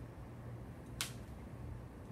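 Low steady room hum, with one short sharp click about a second in as potting soil is added by hand around a succulent in a small ceramic pot.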